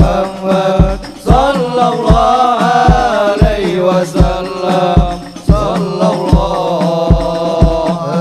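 Live hadroh ensemble: several men's voices singing a chant together through microphones, over steady deep beats of the large hadroh bass drum and frame drums.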